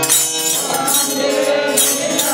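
A group of men singing a Hindu bhajan together, with small hand cymbals (taala) struck in a steady rhythm.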